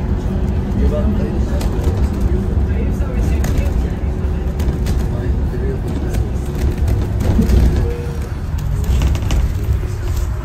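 Steady low rumble of a bus's engine and tyres on the road, heard from inside the bus as it drives.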